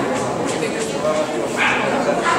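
A dog barking among steady crowd chatter, with a short, high bark near the end.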